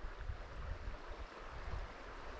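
Faint, steady rush of a clear mountain stream's flowing water, with an uneven low rumble underneath.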